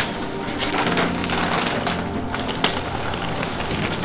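Suitcase wheels rolling and footsteps, with scattered clicks and crunches, under background music with long held notes.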